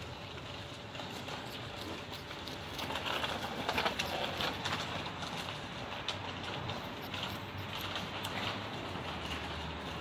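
Non-woven garden fabric rustling and crinkling as it is handled inside a plastic laundry hamper, with scattered small clicks, busiest a few seconds in.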